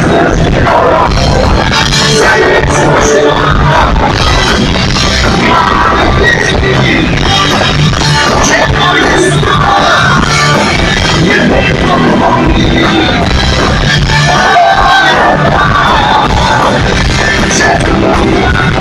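Live punk rock band playing loud, with electric guitars, drums and a singer at the microphone.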